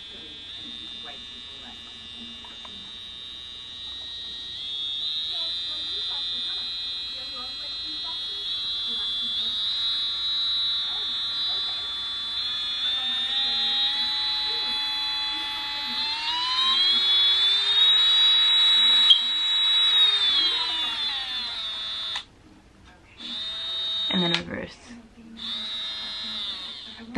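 Cordless electric nail drill (e-file) handpiece motor running with a high whine, its pitch climbing in steps as the speed is turned up from medium towards high speed. The whine is loudest near the top speed, then glides down and stops about 22 seconds in.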